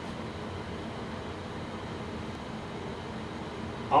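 Steady room tone: the even hiss and hum of an air conditioner running, with nothing else happening.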